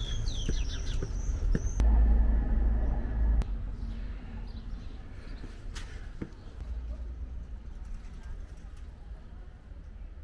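Wind buffeting a handheld camera's microphone in uneven gusts, strongest about two to three seconds in, with a few quick high chirps near the start and scattered light clicks.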